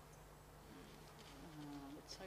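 Near silence: room tone with a faint steady low hum, and a faint voice murmuring in the second half.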